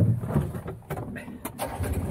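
John Deere Gator utility vehicle driving along a forest track, its engine running low under body rattle, with a couple of sharp knocks in the second half.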